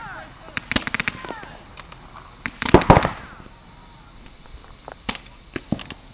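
Paintball markers firing in rapid strings of shots. There are three bursts, about a second in, about halfway (the loudest) and near the end.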